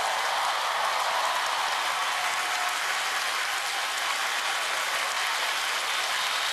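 Large theatre audience applauding, a dense, steady wash of clapping that holds at one level throughout.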